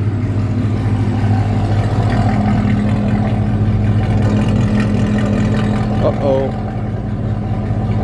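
Car engine idling steadily with a low, even hum.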